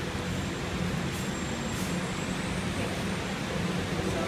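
Steady low background hum and rumble, like distant road traffic, with no pad strikes.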